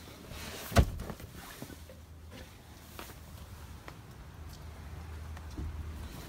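Handling noise inside a vehicle cabin: one sharp thump a little under a second in, then soft rustling and small clicks as someone moves about and gets out through the rear door.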